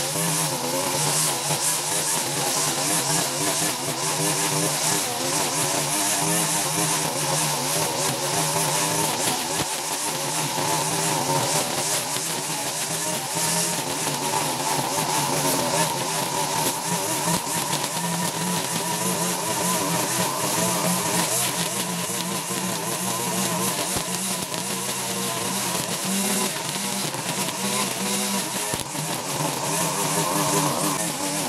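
Petrol string trimmer (weed eater) engine running at cutting speed while its line cuts through tall grass. The engine note wavers slightly up and down as it works.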